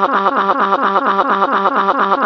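Katrin text-to-speech voice made to cry by repeating one short syllable very fast, about seven times a second, on a flat, unchanging pitch.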